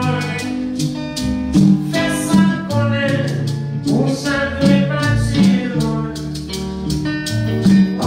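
Live Haitian twoubadou music: an acoustic guitar strummed in a steady rhythm with a hand drum and shaken maracas, and a man singing over them.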